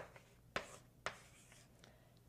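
Chalk writing on a blackboard: three short, sharp chalk strokes about half a second apart in the first second.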